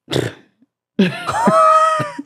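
A woman's short cough-like burst of breath, then after a brief pause a drawn-out vocal exclamation whose pitch rises and bends, a reaction to the question just asked.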